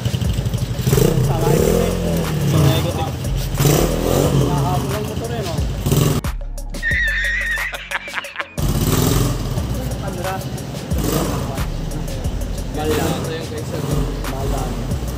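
Engine of a Raider motorcycle converted to a 250 cc engine, running and revving as it is ridden off and brought back. About six seconds in, the engine sound breaks off for two seconds of a man's loud laughter, then resumes.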